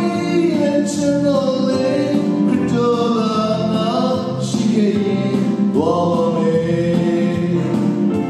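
A man singing a gospel song through a microphone and PA, holding long notes with vibrato over musical accompaniment.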